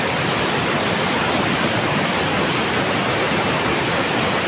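Rushing water of a mountain stream and waterfall: a steady, unbroken rush of falling and tumbling white water.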